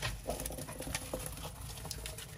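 Small hamster feet scurrying and scrabbling through loose wood-shaving bedding: a quick, uneven run of light scratches and rustles.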